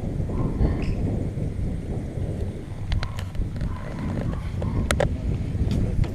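Wind buffeting an outdoor camera microphone: a continuous, uneven low rumble, with a few sharp clicks about three and five seconds in.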